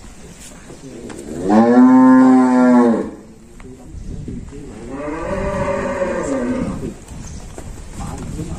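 Cattle mooing twice: a loud moo about a second and a half in, then a longer, quieter moo that rises and falls in pitch.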